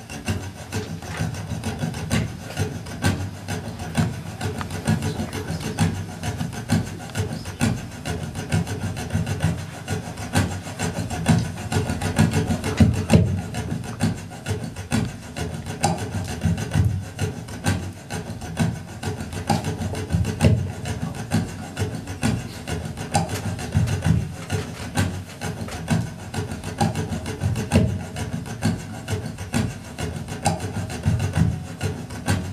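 Rhythmic percussive scratching and knocking on an acoustic guitar, played as a steady, busy groove of short strokes.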